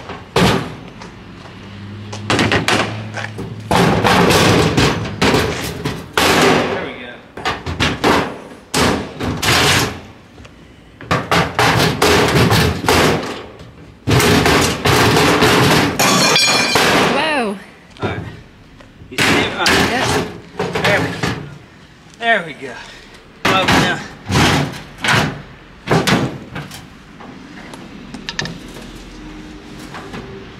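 Sheet-steel gun safe being forced open with a sledgehammer and a pry bar: many loud metal bangs and clanks, with longer stretches of scraping and squealing metal as the door is levered.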